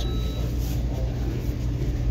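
Steady low rumble of indoor background noise with no voices, the constant hum of the room's machinery.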